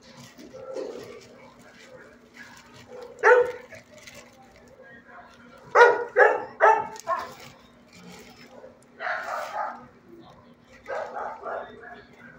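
Dog barking in a shelter's kennels: a single bark about three seconds in, a quick run of four barks around six seconds, and more barks later, over a faint steady low hum.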